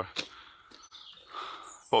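A pause between a man's words, filled by faint outdoor background noise with two brief high chirps, one early and one near the end.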